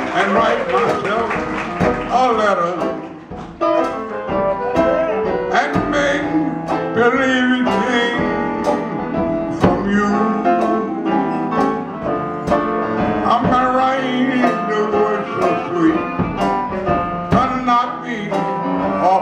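Traditional New Orleans jazz band playing an instrumental chorus: a clarinet carries the melody over strummed banjo, piano and drums keeping a steady beat, with a brief dip in level about three seconds in.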